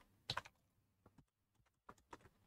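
Faint computer keyboard keystrokes: two quick clicks about a third of a second in, a couple of soft ticks after a second, and another click near the end.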